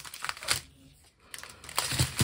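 Small plastic bags of diamond-painting drills rustling and crinkling as they are handled, in short bursts near the start and again near the end with a near-silent lull between.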